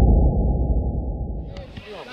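Deep, muffled boom of a logo intro's sound effect dying away, with all the highs cut off, fading over about a second and a half. Near the end, fuller sound with voices fades in.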